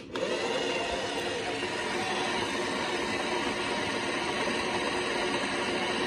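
Toy washing machine switching on with a click, then running steadily with a loud, even noise.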